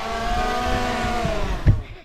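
A boy's voice holding one long, steady note that dips slightly in pitch and fades after about a second and a half, followed by a short knock near the end.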